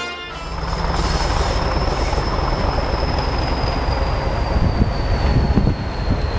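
British Rail Class 40 diesel-electric locomotive working past, with a heavy engine rumble and a thin, high turbocharger whistle that sinks slowly in pitch.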